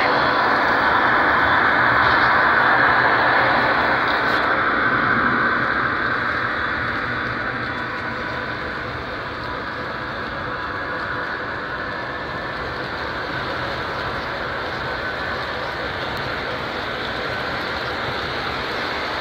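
An O-gauge model passenger train, led by two GG1 electric locomotives, running past on three-rail track with a steady rolling rumble of wheels and motors. It is loudest for the first few seconds and eases down by about halfway as the train moves on, then holds steady.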